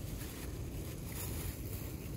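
Steady wind noise buffeting the phone's microphone, a rumbling hiss with no distinct calls.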